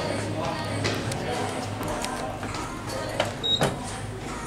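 Shop background music and people talking, over a steady low hum. Near the end there are two sharp knocks and a brief high beep as the elevator car arrives and its doors open.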